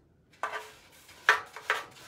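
A paintbrush knocking against the rim of a metal milk can: a clatter with a brief metallic ring about half a second in, then two sharper knocks.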